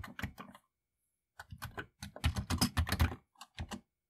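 Keystrokes on a Commodore 64 keyboard: a short burst of typing, a pause of nearly a second, then a longer, quicker run of key presses and a few last keys near the end, as a command is typed in to run the program.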